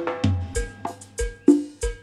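A dance band's drum kit playing a sparse break of bass drum and snare hits, about four strokes a second, with only short stabs of pitched sound between them.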